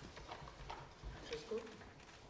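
Faint room sounds in a large hall: scattered light clicks and knocks, with a brief faint voice about halfway through.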